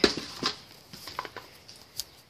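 Phone handling noise: a knock, then a few scattered light clicks and rubs as the phone is moved about, over a faint hiss.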